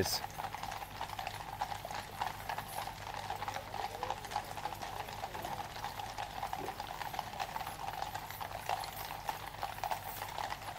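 Household Cavalry horses walking in file, their shod hooves clip-clopping on the road in an irregular overlapping patter of many hoofbeats.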